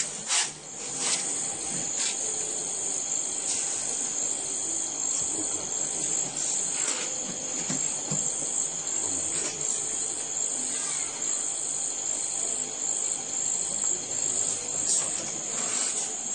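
Steady high-pitched chirring of an insect chorus, with a few scattered faint clicks and knocks.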